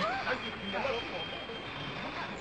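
Brief bits of men's voices over the steady running of a passing truck.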